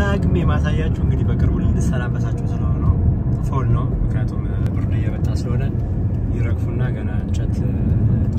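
A car driving, heard from inside the cabin: a steady low rumble of engine and tyre road noise, with a voice over it.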